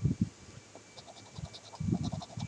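A coin scratching the coating off a scratch-off lottery ticket, heard as faint light scratching ticks, with a few low thumps of handling noise from the hand-held camera.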